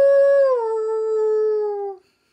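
A man imitating a wolf howl: one long held note that steps down in pitch about half a second in, then trails off and stops near the end.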